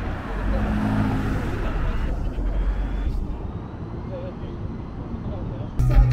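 Street ambience with road traffic running past and faint voices in the background. Near the end it cuts abruptly to a live rock band playing loudly, guitar and drums.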